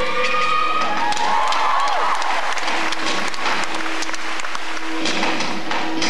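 Audience applause over recorded performance music. The applause swells about a second in, and the music's rhythm comes back to the fore near the end.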